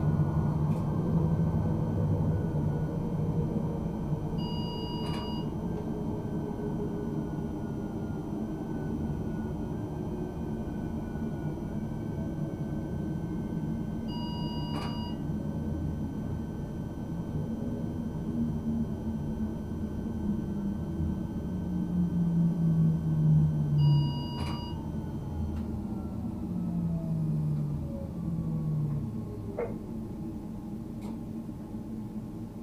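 Cab of a RegioPanter electric multiple unit running on the line: steady rumble of wheels on rails with the traction drive's whine falling slowly in pitch as the train slows. A short electronic beep sounds three times, about ten seconds apart.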